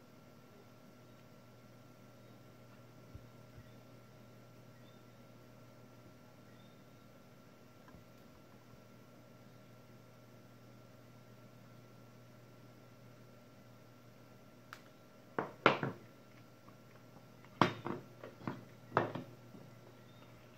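Quiet room tone with a faint steady hum for most of the time. In the last few seconds come about half a dozen short clicks and knocks, the loudest about three-quarters of the way in, as the soldering iron and pliers are put down and handled on a silicone work mat.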